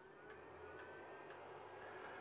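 A Creality Ender 5 Plus 3D printer just switched on and starting up: a faint low hum that begins at once and grows slightly louder, with a thin, faintly rising whine as its fans spin up and a few faint ticks.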